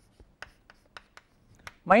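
Chalk writing on a blackboard: a quick run of short taps and scratches, about eight in under two seconds.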